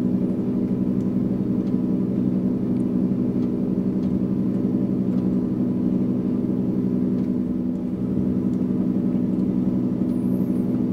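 Simulated piston aircraft engine sound from an FNPT II flight trainer: a steady, even drone, with a few faint clicks.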